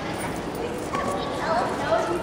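Children's voices chattering in a room, several at once, with clearer voices near the end.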